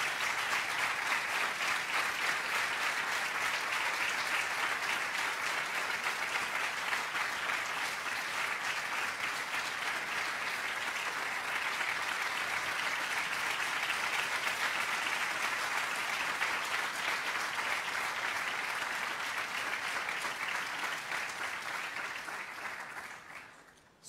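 A large audience clapping steadily, dying away just before the end.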